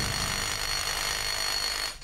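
Cordless power drill running steadily, its masonry bit grinding into a chunk of rock, with a steady high motor whine; it stops just before the end.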